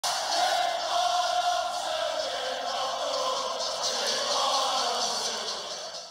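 Intro soundtrack: a crowd of voices chanting over music, fading slightly near the end.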